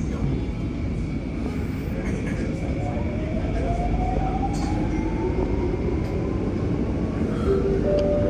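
Interior of a Downtown Line metro train (C951-series) in motion: a steady running rumble under a traction motor whine that rises in pitch as the train speeds up, levelling off near the end.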